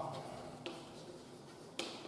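Chalk writing on a blackboard, with two short sharp taps of the chalk striking the board, one about half a second in and another near the end.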